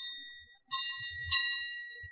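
Small metal percussion instrument struck twice, about a second in and again half a second later, each strike ringing on high and dying away, over the fading ring of a strike just before; faint low thuds sound under them. The strikes serve as the night-watch signal announcing the third watch in a Cantonese opera.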